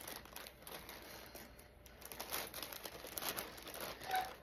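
Clear plastic packaging bag crinkling and rustling as it is handled and pulled open by hand, in faint, irregular crackles.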